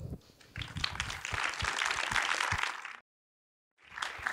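Audience applauding, building up about half a second in and then cut off suddenly at about three seconds, leaving a second of dead silence.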